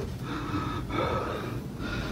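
A person breathing heavily and fast, with a quick breath about every second, over a faint steady hum.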